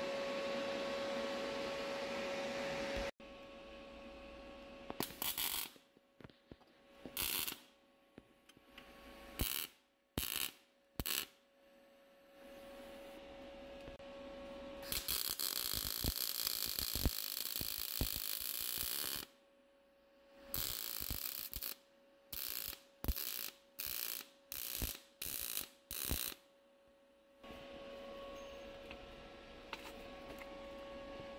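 Wire-feed (MIG) welder arc crackling as a small steel web is welded onto a brake pedal: a run of short tack bursts, one longer bead of about four seconds in the middle, then a quick string of short stitches. A steady hum with a faint tone sits under the start and the end.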